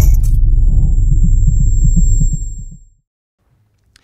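Low, pulsing rumble of a logo sound effect, with a thin high tone sustained over it. It fades out about three seconds in.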